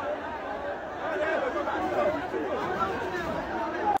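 A large crowd's many overlapping voices chattering at once.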